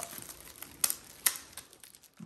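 Plastic ultrasound probe sheath crinkling under gloved hands as rubber bands are slipped over it. Two sharp snaps come near the middle, under half a second apart.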